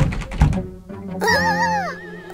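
Cartoon soundtrack: two dull thumps about half a second apart, then a short wavering, warbling tone near the end, over background music.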